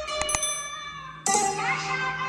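Two quick mouse clicks and a bright bell ding, the sound effect of a subscribe-button animation, over the dance performance's music. A little over a second in, the music comes back in loudly with a rising sweep.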